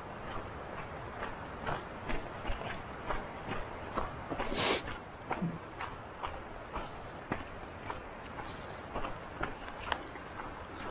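Footsteps crunching on a dry dirt trail at a steady walking pace, about two to three steps a second, over a steady rustle of movement. Halfway through comes one louder, brief scraping rustle.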